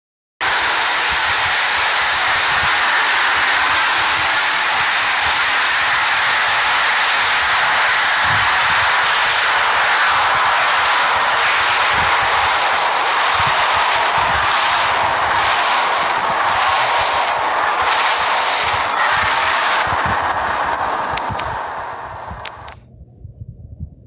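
A loud, harsh wall of noise from an animation's sound track, cutting in suddenly about half a second in and thinning out near the end, with a few faint knocks in its later part.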